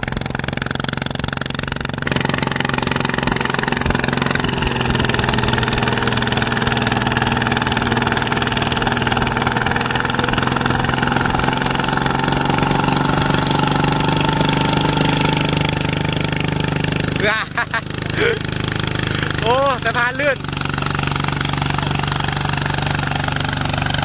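Single-cylinder diesel engine of a two-wheel walking tractor running steadily under load as it puddles a flooded rice paddy, with a fast, even beat. A few words are spoken a few seconds before the end.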